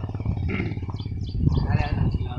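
A man's voice speaking a few short fragments over a steady low rumble.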